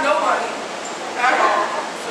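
A person speaking in short phrases. Only speech is heard.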